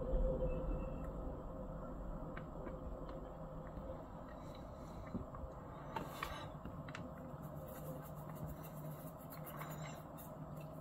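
Freight train of tank cars starting to roll slowly after a brake release, heard from a distance: a low rumble that fades over the first few seconds, with a few faint clicks around six seconds in. A low drone from the two EMD SD60 locomotives' diesel engines builds near the end as they throttle up.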